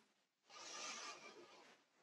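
A faint exhale of breath, once and briefly, against near silence.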